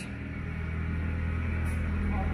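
Steady low mechanical hum with no break.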